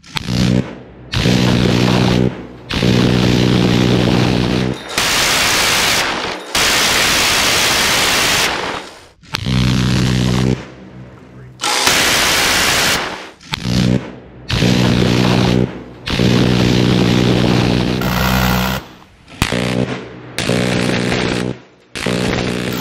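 Machine-gun fire in a string of long bursts, each one to two seconds, with short breaks between. Much of it is the continuous buzz of a rotary M134 minigun firing so fast that the shots blur into one tone.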